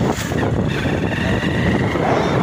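Motorcycle engine running steadily while riding along a road, with wind rushing over the microphone.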